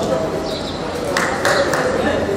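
Indistinct voices of kabaddi players and onlookers calling in the hall. A short, sharp, high-pitched tone cuts in a little past a second in.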